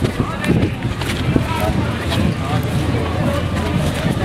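Indistinct voices and chatter of people close by, over a steady low rumble of outdoor background noise.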